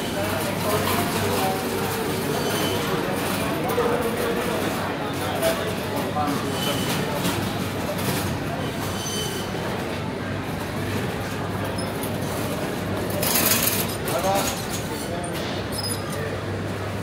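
Busy indoor market hall ambience: background chatter of shoppers, the rolling of shopping-trolley wheels on a concrete floor, and a steady low hum. There are occasional light clinks, and a brief loud hissing rush comes about three-quarters of the way through.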